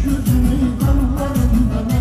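Loud live pop music from a band with a heavy bass and a steady beat, and a voice singing over it through a microphone.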